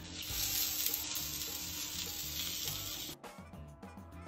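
Food sizzling in a hot pan, a loud, even hiss over background music; the sizzle cuts off suddenly about three seconds in, leaving only the music.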